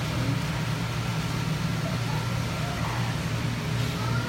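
Steady low hum with an even hiss over it, the running equipment of a store floor full of aquarium tanks. Faint voices can be heard in the background.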